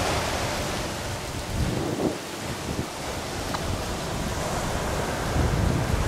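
Ocean surf washing onto a sandy beach, a steady rushing noise, with gusts of wind buffeting the microphone in uneven low rumbles.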